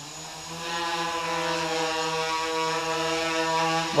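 Quadcopter's four Tiger MS2208 brushless motors and 8-inch propellers humming at a steady pitch as it hovers. The sound grows louder about half a second in.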